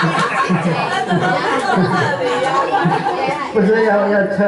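Several people talking at once in a large room: a babble of overlapping voices.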